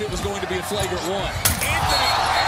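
Game audio from a college basketball broadcast: steady arena crowd noise and a commentator's voice, with a basketball bouncing and a sharp knock about one and a half seconds in.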